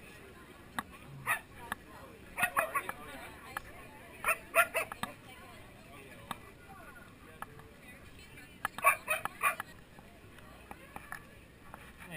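Dog barks in short runs of several quick, sharp barks: once about a second in, then around two and a half, four and a half and nine seconds. Under them runs steady crowd chatter.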